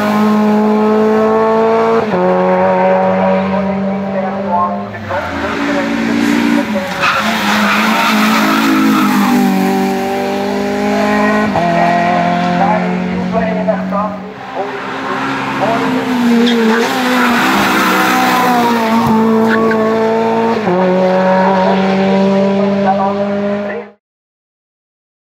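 Renault Clio race cars running hard at high revs as they corner and accelerate uphill past the camera, one car after another, the engine note jumping in pitch several times with gear changes. The sound cuts off suddenly at the end.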